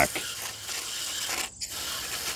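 Aerosol can of foaming air-conditioner coil cleaner spraying with a steady hiss onto the condenser coil's fins. The spray stops briefly about one and a half seconds in, then starts again.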